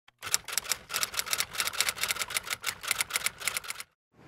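Typewriter keys clacking in a rapid run of clicks that cuts off abruptly just before the title card finishes. It is a typing sound effect laid over the intro.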